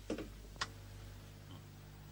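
Two short, sharp clicks about half a second apart as the switch on a hanging light-bulb socket is turned and the bulb comes on.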